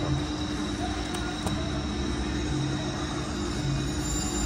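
Steady casino-floor din: the murmur of surrounding slot machines and crowd over a constant low hum and a thin high tone, with no distinct sound standing out.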